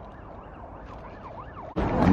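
A faint emergency-vehicle siren rising and falling quickly, about three sweeps a second, over a steady low hum of city traffic. It is cut off abruptly near the end by a man's voice.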